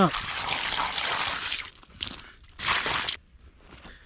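Water poured from a container onto toy monster trucks, splashing into a muddy puddle for about a second and a half, then two shorter bursts of splashing.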